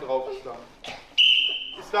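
A referee's whistle blown once in a wrestling hall, one short steady blast as a young wrestler holds his opponent pinned on his back.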